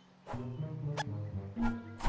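Orchestral film score under several short animal yelps from cartoon rodent characters, a few quick rising or arching squeaks spaced about half a second apart.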